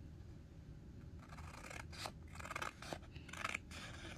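Scissors cutting through printed sublimation transfer paper: a faint string of short snips starting about a second in.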